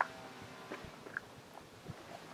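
Faint crunches of shoes shifting on gravel, with a sharp click right at the start.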